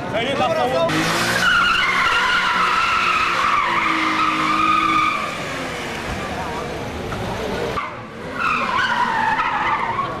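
Car tyres squealing on asphalt as a car drifts: a long, wavering screech lasting about four seconds, then a second squeal falling in pitch near the end. Underneath runs the car's engine noise.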